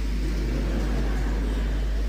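A steady, deep hum with faint background hiss, unchanging through a pause in the speech.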